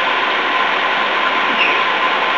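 Steady hiss of background noise, with a faint steady whine under it and no distinct events.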